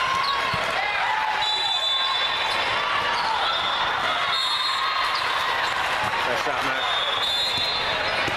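Indoor volleyball rally: a volleyball being hit and bouncing on a hardwood court, sneakers squeaking on the floor, and voices of players and spectators echoing in a large hall. Short high whistle blasts sound several times in the background.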